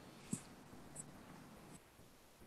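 Near silence on an open call line: faint room tone with three soft clicks, about one every two thirds of a second.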